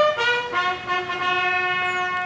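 Bugle call on a brass horn: a few short notes stepping up and down, then one long steady held note from about half a second in.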